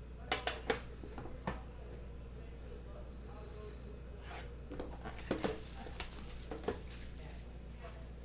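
Sharp clicks and light knocks from a metal card tin and the cardboard card box on it being handled. A few come in the first second and a half, then another cluster about four and a half to seven seconds in, over a steady low hum.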